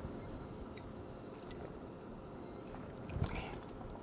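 Quiet sipping and swallowing of a carbonated soda from a glass, with faint mouth clicks and a brief, slightly louder mouth sound about three seconds in.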